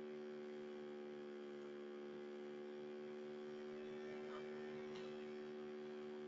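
Faint, steady electrical mains hum in the recording, a constant buzz of several steady tones with nothing else over it.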